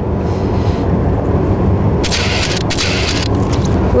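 Steady low rumble of a small powerboat's engine, with wind buffeting the microphone. About two seconds in, a second or so of hissing, crackling noise rides on top.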